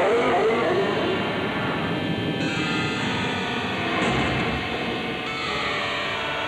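Film soundtrack music: sustained, held chords with a low rumble that swells about four seconds in.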